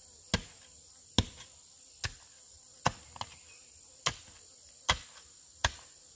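A long pole jabbed down into packed dirt, seven sharp thuds at a steady pace of a little over one a second, some followed by a smaller knock. A steady high insect drone runs underneath.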